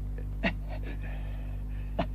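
Steady low electrical hum on an old film soundtrack, with a short gasp about half a second in and a faint high tone in the middle.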